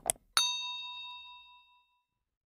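Sound effect of two quick clicks, then a single bright bell ding that rings and fades away over about a second and a half.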